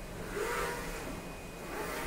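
Focus Atlas-1311 UV flatbed printer printing: the print-head carriage travelling along its gantry with a faint, steady motor whir.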